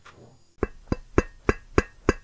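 A short percussive beat in a music cue: sharp, evenly spaced knocks about three a second, starting about half a second in after a brief silence.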